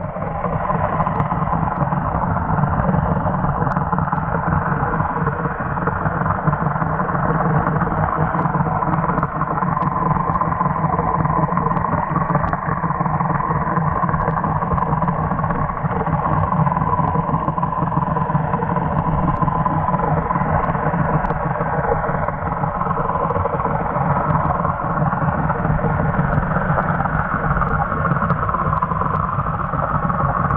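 Muffled underwater sound picked up by a camera in a waterproof housing: a steady motor drone, as of a boat engine carried through the water, that holds an even level without changing.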